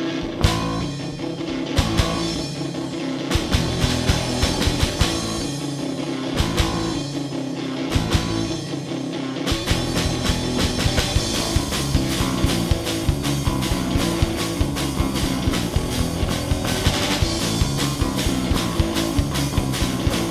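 Live rock band playing loud and distorted, on electric guitar, bass guitar and drum kit. The drums play sparse, broken hits at first, then settle into a steady, driving beat from about halfway through.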